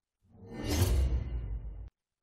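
Whoosh sound effect for a title-card transition, with a deep rumble under it: it swells over about half a second, trails off and cuts off abruptly near the end.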